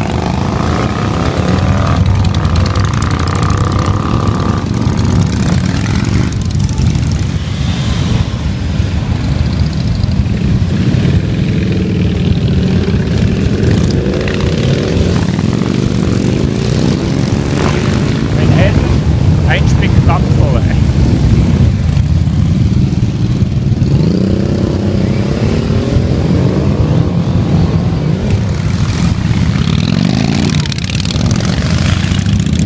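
A procession of cruiser motorcycles riding past one after another: a continuous deep engine rumble, with each bike's engine note swelling and sweeping in pitch as it revs and passes close by.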